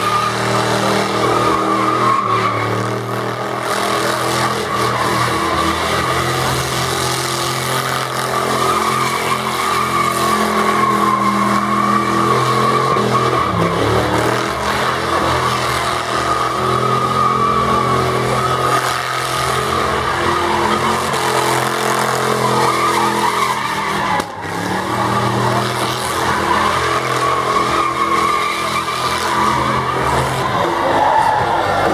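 A car's engine held at high revs in a burnout, its spinning rear tyres squealing against the pavement. There is a brief lift in the revs about three quarters of the way through, then it is back on the throttle.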